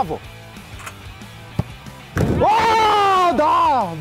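A single sharp knock about one and a half seconds in, then a long, loud celebratory shout from a man, falling slightly in pitch.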